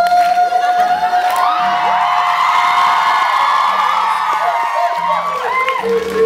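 A male voice holds one long high note, a sung 'woo', over strummed acoustic guitar; the note ends about three and a half seconds in. Meanwhile the audience whoops and cheers, many voices rising and falling over it.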